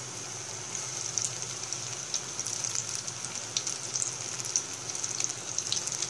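Maggi noodle pakoras deep-frying in hot oil in a pan: a steady high sizzle with scattered small crackles and pops.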